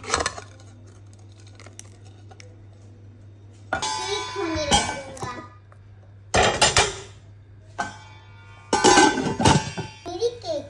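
Metal kitchenware clattering: a cake tin is set onto a perforated steel steamer plate inside a cooking pot and the pot's steel lid is put on. There are three loud rattling clanks with ringing, about four, six and a half and nine seconds in.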